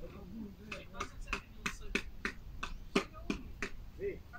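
A quick, uneven run of sharp clicks, about four a second, with a voice heard briefly at the start.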